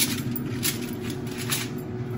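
Aluminum foil crinkling in a few short crackles as hands press and tuck it down over a baking dish, with a paper towel rustling.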